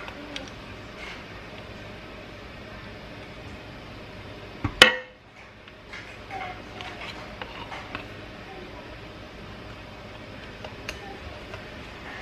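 Plastic spatula scraping thick fruit butter through a plastic canning funnel into a glass jar, with scattered light clicks and taps. There is one sharp knock a little under five seconds in, the loudest sound.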